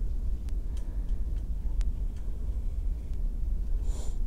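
Dry-erase marker drawing strokes on a whiteboard: faint scattered ticks over a steady low room rumble, with a brief higher squeak right at the end.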